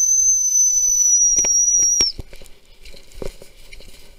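A gundog whistle blown in one long, steady, high-pitched blast that stops sharply about two seconds in, used to call in a cocker spaniel. A few soft knocks and rustles follow.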